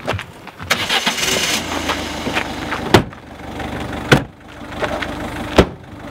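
A small hatchback's engine starts about a second in and runs steadily. Its doors and tailgate slam shut three times, about three, four and five and a half seconds in.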